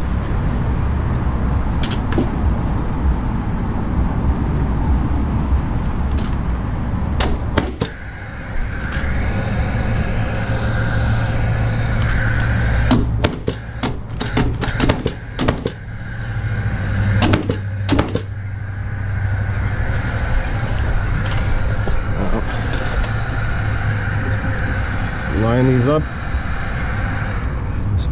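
Paslode cordless framing nailer driving nails into pine 2x6 tabletop boards: a few scattered sharp shots, then a quick run of several about halfway through, over a steady low background hum.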